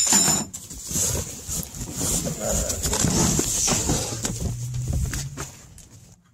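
Rustling and crinkling of plastic packaging and cardboard being handled while an inflatable's storage bag is taken out of its box, with a brief low hum near the end.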